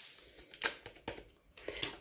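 Dry yeast being tipped from a sachet into a plastic mixing bowl of flour: a few faint, short rustles and ticks.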